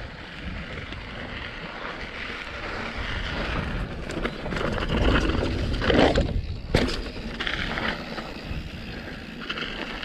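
Canyon Torque mountain bike rolling fast over a gravel path and grass, with wind rushing on the camera's microphone, growing louder as it speeds up. A single sharp knock comes about seven seconds in.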